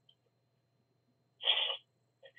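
A pause with only a faint steady low hum, then, about a second and a half in, a man's short wordless vocal sound lasting under half a second.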